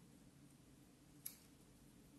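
Near silence with a single short snip about a second in: small sewing scissors cutting through folded bias tape to even its ends.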